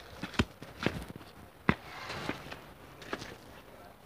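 Footsteps: a handful of separate steps at uneven spacing, each a short soft knock.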